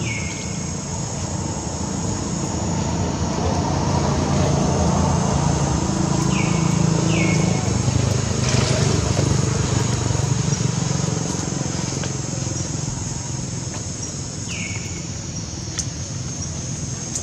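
Low engine rumble of a passing motor vehicle that swells over several seconds in the middle and then fades, over a steady high-pitched drone. A few short, high, falling chirps stand out: one at the start, two about six to seven seconds in and one near the end.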